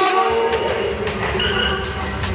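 Reggae sound-system music played loud through the PA, with heavy bass coming in about a third of a second in under held horn-like tones.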